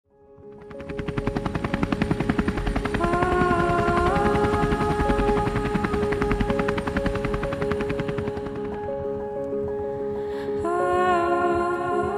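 Helicopter rotor blades beating in a rapid, even chop that fades in from silence and dies away about three-quarters of the way through. Music with sustained tones and a slow melody plays over it throughout.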